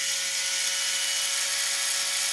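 Small yellow plastic-gearbox DC gear motor running steadily at just over 200 rpm, a constant whir with a faint steady tone, as it spins its slotted speed-sensor disk.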